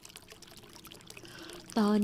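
Faint, steady background of running water under a pause in the narration; a woman's soft voice begins again near the end.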